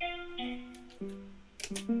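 Sampled plucked guitar from the Spitfire Audio LABS plug-in playing a slow melody through Logic Pro X's Amp Designer British Combo amp model. There are four single notes, each ringing out and fading before the next.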